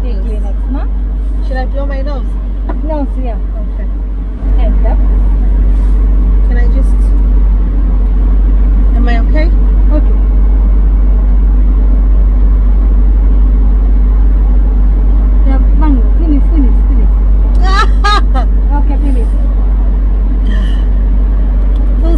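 Steady low rumble inside a stationary car's cabin, jumping louder suddenly about four seconds in, with quiet talk between two people over it.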